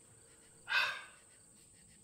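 One short, breathy exhale a little under a second in, over a faint, steady, high chirr of crickets.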